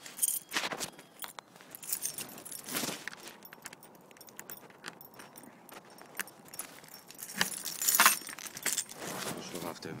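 A bunch of keys jangling and clicking in irregular bursts, with small handling knocks; the loudest burst comes about eight seconds in.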